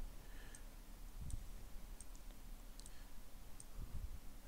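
Faint computer mouse clicks, about half a dozen scattered over a few seconds, over quiet room tone.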